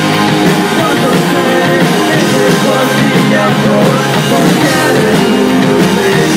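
Punk rock band playing live: electric guitars and drums, loud and dense without a break, recorded on an iPhone 4.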